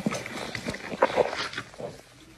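Shaken cola sputtering and squeaking out past hands clamped over the mouth of a plastic Coca-Cola bottle, in about five short bursts.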